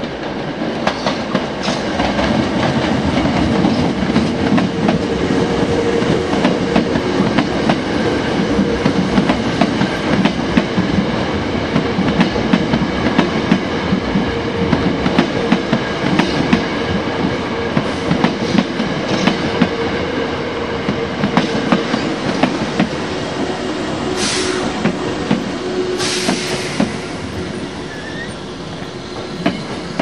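Hankyu 7000-series electric commuter train running past: a steady rumble of wheels on rail with repeated clicks over the rail joints. Two short high-pitched noises come near the end, and the sound fades as the train slows.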